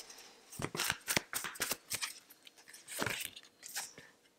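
Hands shuffling a deck of tarot/oracle cards: a run of quick, irregular card flicks and slides.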